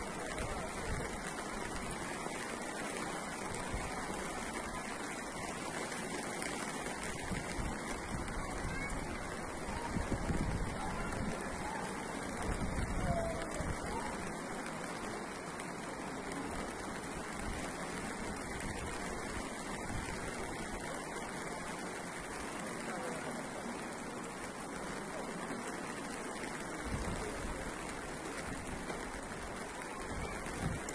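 Steady rushing of floodwater flowing across a street, an even noise with a couple of brief louder swells about ten and thirteen seconds in.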